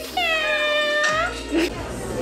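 A drawn-out, meow-like call of about a second that dips slightly, holds level and rises at the end, over background music.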